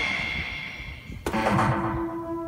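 Biohazard 6 pachislot machine: its bonus fanfare fades out, then about a second in a sharp click of the start lever sets off the machine's start sound with falling tones, followed by a steady electronic tone as the reels spin.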